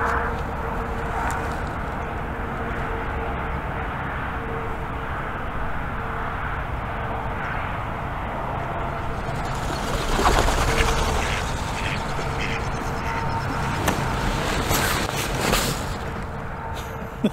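A flock of mallards flying in low and dropping in to land close by, heard as a steady rushing rumble that swells loudest about ten seconds in.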